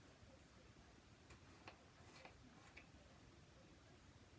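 Near silence with a few faint light taps: a clear-mounted rubber stamp being pressed onto a Versamark ink pad and onto cardstock.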